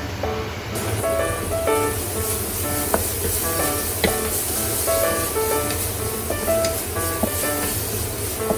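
Light background music of short plucked notes over the sizzle of tauchu bean paste, minced ginger, garlic and chilli frying in oil in a wok. The sizzle sets in under a second in, and the wooden spatula knocks lightly against the pan a few times as it stirs.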